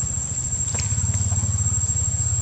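A steady low droning hum with a fast, even flutter, like a motor running, under a thin, steady, high-pitched insect whine, with a few faint clicks.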